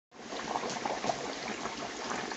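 Hot oil bubbling and crackling steadily around a whole turkey deep-frying in a stainless steel electric deep fryer.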